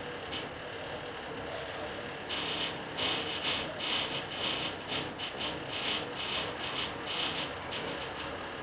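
Mechanical clicking and rattling in short, irregular bursts, sparse at first and then about two to three a second from a little after two seconds in, over a low steady rumble.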